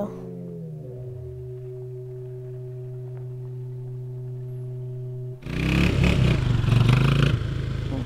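A sustained musical drone that slides down in pitch in its first second, then holds steady. About five and a half seconds in, it gives way suddenly to the louder, rough sound of a four-wheeler (ATV) engine running.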